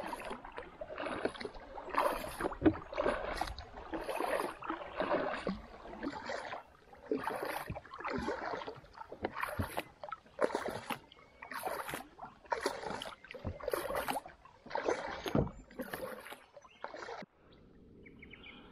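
Kayak paddle strokes in a steady rhythm, about one a second, each a swish and splash of the blade in calm river water. The strokes stop shortly before the end.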